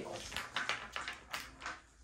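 Light clicks and taps of a small diamond-painting toolkit being set down and shifted among other items, several quick knocks in the first second and a half.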